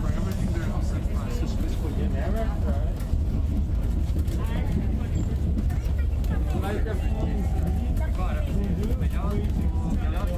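Steady low rumble of a moving bus, heard from inside the cabin, with indistinct voices over it.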